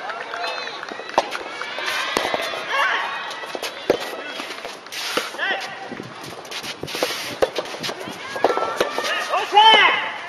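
Soft tennis rally: the soft rubber ball struck by rackets with sharp pops about a second or two apart, over shouting voices that are loudest near the end.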